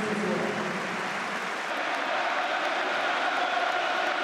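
Large stadium crowd applauding and cheering steadily.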